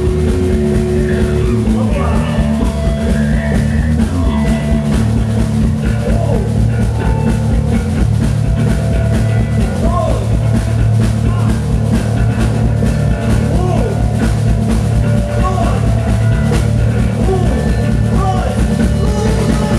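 Rock band playing loud and steady: electric guitars and bass over a drum kit keeping a regular beat.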